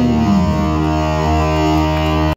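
Electric guitar left ringing through a Marshall amp at the end of a punk song: a note slides down in pitch just after the start, then settles into a steady held drone.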